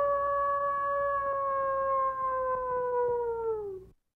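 One long howl held at a steady pitch. It rises briefly at the onset, then slides down and fades out near the end.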